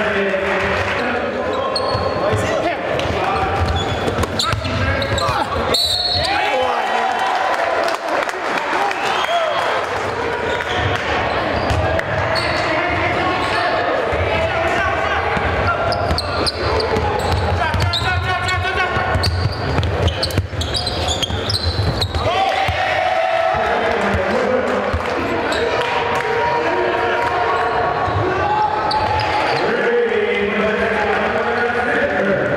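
Live basketball game sound in a gymnasium: a ball bouncing on the hardwood court amid the voices of players and spectators, echoing in the hall.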